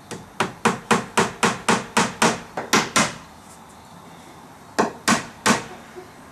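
Hammer driving a nail into a wooden porch column: a quick run of about eleven strikes at roughly four a second, a pause, then three more strikes.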